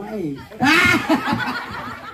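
Laughter into handheld microphones: a loud burst starting about half a second in, then trailing off.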